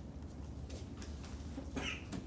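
Quiet room tone with a steady low hum, a few faint ticks and a brief high squeak near the end.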